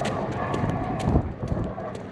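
Miniature schnauzer's claws clicking on stone paving as the dog runs, a quick, uneven patter of ticks, over a low rumble.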